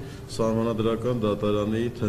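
Only speech: a man speaking Armenian into microphones, resuming after a short pause near the start.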